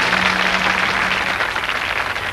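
Studio audience applauding at the end of a rock band's live number. A last low sustained note from the band fades out about a second and a half in.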